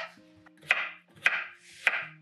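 Kitchen knife chopping zucchini on a wooden cutting board: three sharp chops about 0.6 s apart, with faint background music underneath.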